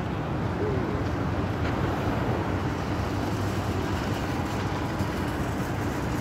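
Steady outdoor city background noise: a continuous low rumble with hiss and no distinct events.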